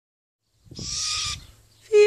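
A young great grey owl and brown wood owl hybrid gives a harsh, hissing screech lasting about two-thirds of a second. Near the end comes a short, loud, clear call.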